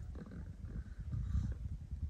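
Wind buffeting the microphone: an irregular low rumble that flutters throughout.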